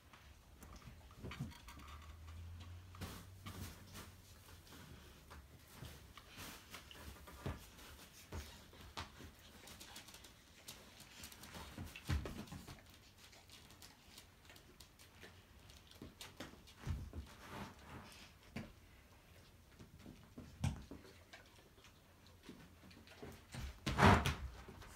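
Faint, scattered taps and soft thumps of a dog's paws stepping on and off inflatable balance discs and a plastic balance pad, with a few louder knocks.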